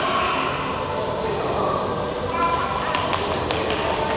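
Indistinct voices of people talking in the background, with a few sharp taps about three seconds in.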